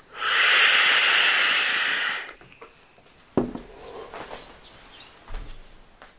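A draw on a rebuildable dripping atomizer (RDA) vape: a steady rushing hiss of air pulled through its airflow, lasting about two seconds. A knock follows about halfway through, then quieter rustling and bumps of movement.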